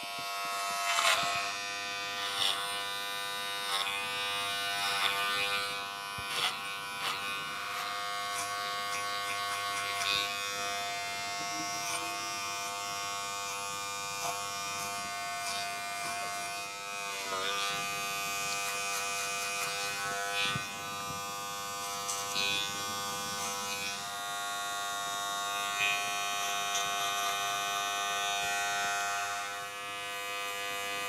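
Gold Wahl cordless hair clipper running steadily while cutting short hair up the nape, with short louder passes now and then as the blade works through the hair.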